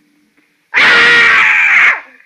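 An actor's sudden, loud scream in an old radio drama, about a second long and cut off sharply: the ship captain's death cry as the vampire comes for him.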